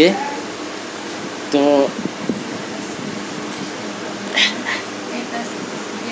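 A single short spoken word about a second and a half in, over steady, even background room noise with a faint hiss.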